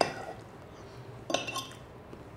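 Metal forks clinking and scraping against ceramic plates: a sharp clink at the start and a short run of clinks about a second and a half in.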